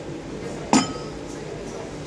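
A single sharp clink of a hard object, with a brief ringing tone, about three-quarters of a second in, over a steady low background hum.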